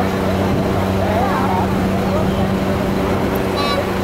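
Street noise from idling vehicles: a steady low hum with voices wavering in the background. Near the end a run of short, evenly spaced beeps starts, about two a second, as from a vehicle's warning signal.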